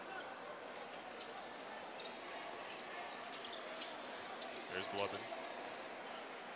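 Basketball being dribbled on a hardwood court over the steady murmur of an arena crowd, with a louder moment about five seconds in.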